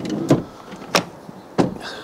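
Three short, light clicks or knocks spaced a little over half a second apart, over faint background noise.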